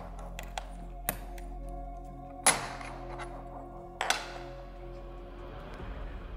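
Soft background music with long held notes, over which small hard clicks and knocks of a hex driver and the car's parts being handled sound several times; the sharpest is about halfway through, and another comes about a second later.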